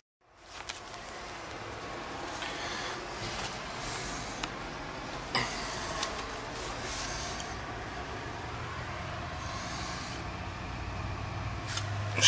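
Carrier central air conditioner's outdoor condensing unit running: a steady whir with a low hum that grows stronger in the second half, and a few light clicks. The system is completely out of refrigerant, with the gauges reading near zero pressure.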